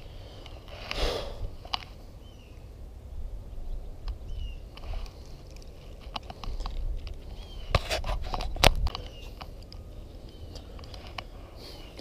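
Handling noise from a spinning rod and reel being fished, over a low wind rumble on the microphone: a soft rustle about a second in, a few sharp clicks, two of them close together in the second half, and several short, faint high chirps.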